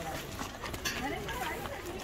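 Background chatter of several people talking at a distance, with a few faint clicks.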